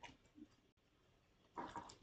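Near silence: room tone in a pause between spoken passages, with a faint short click at the start and a couple of faint soft sounds, the last just before speech resumes.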